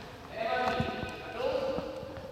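A group of young people's voices chanting together in phrases, echoing in a large sports hall, with a few light knocks of footsteps on the hard floor.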